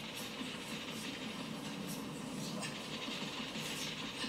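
A television's soundtrack played through its speaker and picked up in the room: a steady background with no speech.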